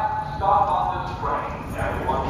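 Indistinct voices speaking in short phrases over the low background rumble of an underground subway platform.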